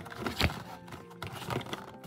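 Thin cardboard box being opened by hand: its flaps and folded inner tray are handled, giving a few soft scrapes and taps, the clearest about half a second in. Quiet background music runs underneath.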